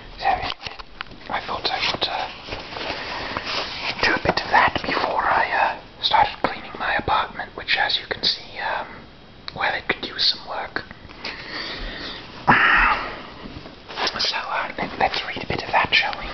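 A man whispering in short phrases with pauses between them.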